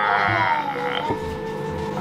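A man's drawn-out, croaky vocal groan, falling in pitch, that settles into a steady held note about halfway through.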